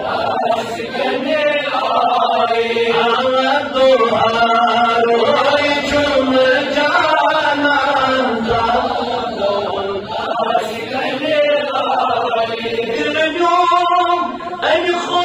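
A man singing a Kashmiri naat, a devotional chant, into a microphone without instruments, in long held notes that waver and bend in pitch.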